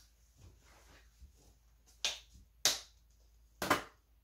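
Three sharp snaps of plastic packaging being handled, the first about two seconds in, the next two about half a second and a second apart.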